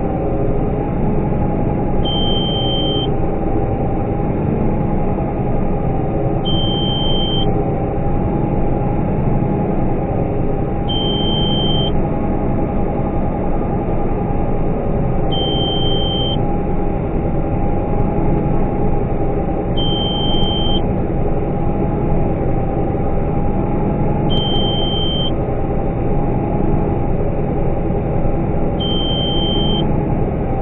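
Combine harvester running steadily, heard inside the cab while it unloads corn, with an in-cab warning beep of about a second repeating seven times, roughly every four and a half seconds.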